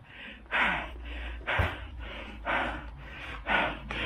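A person breathing hard, about one short breath a second, with a faint low rumble underneath and a short knock about one and a half seconds in.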